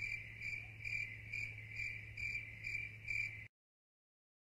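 Insect chirping in an even rhythm, about two and a half short chirps a second, over a faint low hum; it cuts off suddenly near the end.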